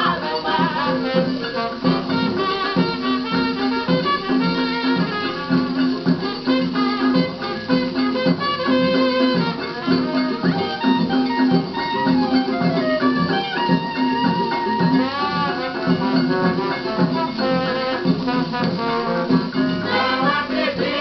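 A 1950 samba playing from a 78 rpm shellac record on a turntable: an instrumental passage by a regional ensemble, with plucked strings and wind instruments carrying the tune over a steady rhythmic pulse. The sound is narrow and dull at the top, with nothing in the high treble.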